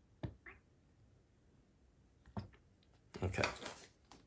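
Plastic squeeze bottle of white acrylic paint handled over a paper cup: two quiet clicks about two seconds apart, with a brief squirt just after the first as paint is squeezed out.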